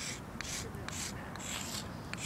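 A stick of chalk scraping on rough asphalt as letters are written, a run of short scratchy strokes about two a second.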